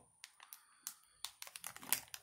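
Clear plastic bag of small fused smoke balls turned in the hand: faint, scattered crinkles and light clicks, a few at first, then a quicker run in the second second.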